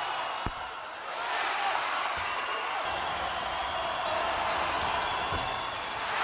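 Steady arena crowd noise with a few dull thuds of a basketball bouncing on the hardwood court, spread out about half a second, two seconds and five and a half seconds in.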